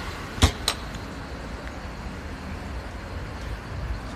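Low, steady outdoor street rumble of road traffic, with two sharp clicks about a quarter of a second apart shortly after the start.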